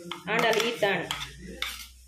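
A steel spoon scrapes and clinks against a stainless steel mixer-grinder jar and a steel bowl as thick ground chutney is scraped out. There are a few sharp metallic clicks in the second half.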